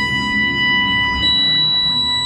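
Dark ambient electronic music: high synthesizer tones hold steady over slowly shifting low notes, and a brighter high tone enters a little past a second in.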